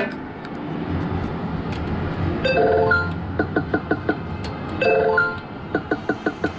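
Sigma Joker Panic! video poker machine playing its electronic sound effects: a chord of tones about two and a half seconds in, then quick runs of short beeps as the cards come up, starting again near the end. Underneath is the steady din of the arcade.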